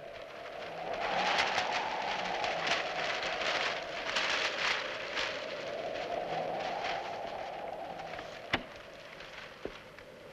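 Wind blowing through a room, a hollow whoosh that swells and dies back twice, with newspapers rustling and flapping in the draught. A single sharp click comes near the end.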